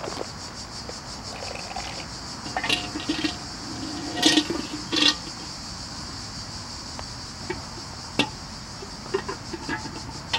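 Steady high chirring of insects, with scattered sharp clicks and a short run of louder clattering a few seconds in.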